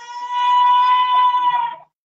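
A person's voice crying out in one long, loud, high-pitched wail that holds a steady pitch and then cuts off suddenly near the end.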